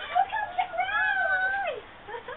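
A person's high, drawn-out vocal cry without words, wavering up and down and sliding down in pitch at its end, after a few short calls.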